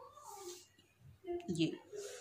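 A woman's voice, quiet: a faint short falling sound at the start and a single short spoken word near the end.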